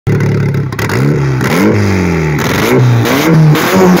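Turbocharged Honda K24 four-cylinder engine in a Toyota MR2 being blipped on the throttle. Its pitch rises and falls about five times in quick succession.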